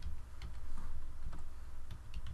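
Computer keyboard keys tapped a few times in slow, separate clicks about half a second apart as a password is typed, over a steady low hum.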